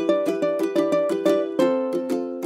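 Background music: a light plucked-string tune of quick chords and notes, about four a second.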